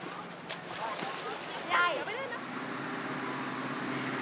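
Outdoor river ambience: a steady wash of shallow flowing water and splashing, with distant children's voices and one raised call about two seconds in. A steady low hum comes in during the second half.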